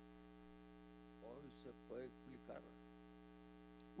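Near silence filled by a steady electrical mains hum on the audio feed, with a faint voice speaking a few words in the middle.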